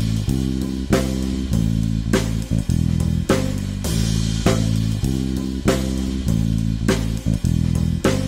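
Background music: guitar and bass over a steady drum beat.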